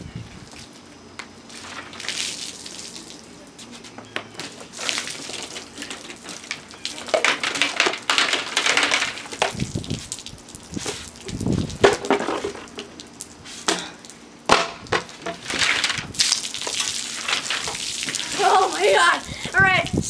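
A cola bottle with Mentos in it being shaken, its foaming soda fizzing out and splashing onto a plastic table in several separate gushes.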